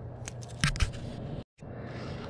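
A few small clicks and knocks from a model skull and a pen being handled, over a low steady hum. The sound cuts out completely for a moment about one and a half seconds in.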